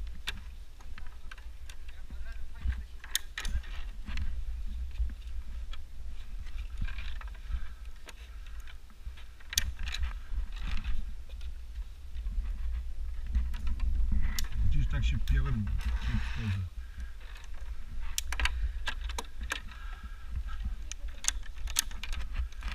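Scattered knocks and clicks of climbing a wooden ladder: hands and shoes on the rungs and the safety lanyard's metal hardware, over a constant low handling rumble on the body-worn camera's microphone.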